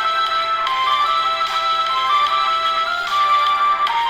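Background music: a bright, high melody moving in short stepped notes, with almost no bass.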